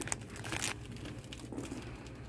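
Plastic snack bags crinkling in a few short rustles, the loudest about half a second in, over a low steady hum.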